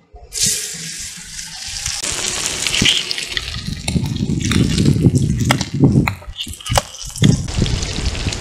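Marinated fish pieces sizzling in hot oil in a frying pan. The sizzle starts suddenly as the first piece goes in, with crackles and pops throughout, and there is low rumbling with a few knocks in the second half.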